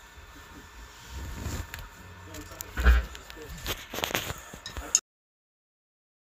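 Low room sound with faint indistinct voices and a low electrical hum, broken by knocks and bumps. The loudest is a heavy thump about three seconds in. The sound cuts off abruptly about five seconds in.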